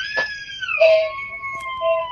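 A child's high-pitched, drawn-out wail that slides down in pitch early on and then holds steady.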